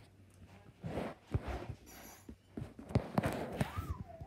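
Irregular rustling and soft knocks of movement and handling close to the microphone, with a brief wavering high-pitched tone near the end.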